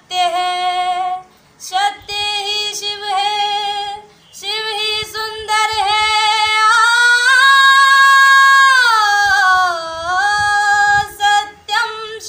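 A woman singing solo without accompaniment, in drawn-out devotional phrases. A long held note in the middle dips in pitch and rises again near the end.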